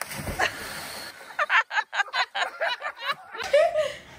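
Water splashing as a man runs onto a floating foam water mat, followed by a fast burst of laughter.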